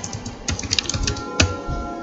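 Typing on a computer keyboard: a quick, uneven run of keystrokes spelling out a short word, one key struck harder about a second and a half in.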